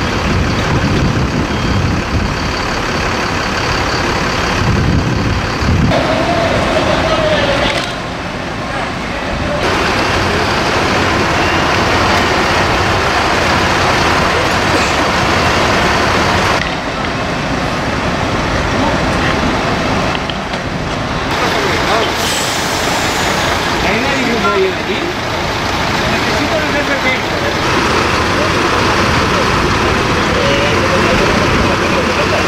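Fire engines running with a steady engine noise, changing abruptly several times, with short bits of distant voices.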